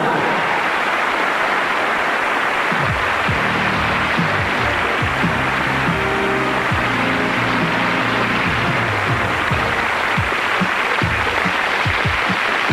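Studio audience applause over the show's closing theme music, whose bass line and beat come in about three seconds in.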